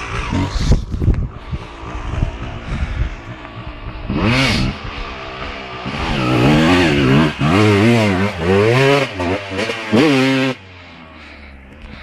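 Honda CR250 two-stroke single-cylinder motocross bike engine revving up and down repeatedly as it is ridden, with one short rev about four seconds in and the loudest run of revs through the second half, cutting off abruptly near the end. Irregular low rumbling fills the first few seconds.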